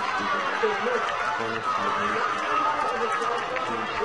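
Many voices at once: a studio crowd shouting and chattering, with no clear words.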